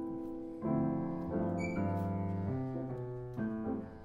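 Grand piano playing slow chords, the chord changing every half second to a second, with a short lull near the end.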